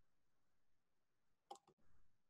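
Near silence: faint room tone, with one short, faint click about one and a half seconds in.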